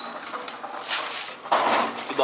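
Old metal child's pedal car being handled: its body, steering and wheels rattle and scrape over the debris-strewn floor, with a few sharp knocks and a louder scrape about one and a half seconds in.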